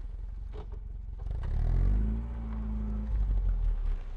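A motor vehicle engine running, its pitch rising about a second and a half in, holding briefly, then dropping back.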